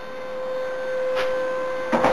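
A steady high-pitched hum over a low hiss, with one faint click about a second in.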